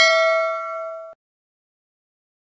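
A bell-like ding sound effect, the notification-bell chime of a subscribe animation, ringing with several steady tones and fading, then cut off suddenly about a second in.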